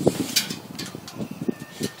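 A steel tape measure being drawn out and handled against a metal trailer, giving irregular light clicks and knocks over a low rustle.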